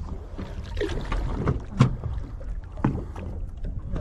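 Steady low rumble of wind and water around a boat on open sea, broken by two sharp knocks, the louder about two seconds in and another about a second later.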